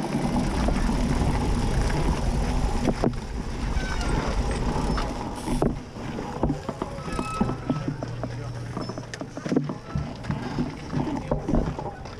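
Wind buffeting an outdoor action-camera microphone, a heavy rumble for the first five seconds or so that then eases off, with scattered sharp clicks and faint voices of people nearby.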